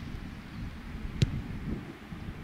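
Wind buffeting the microphone: an uneven low rumble, with one sharp click a little past halfway.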